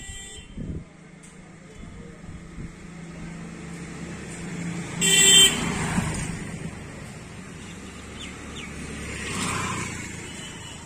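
A road vehicle passing by, its engine and tyre noise building and then fading, with one short horn toot about five seconds in as it goes past.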